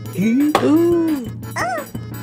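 Wordless cartoon character voices over background music: a low voice swoops up and arches through two drawn-out exclamations, then quick high-pitched squeaky chirps follow near the end.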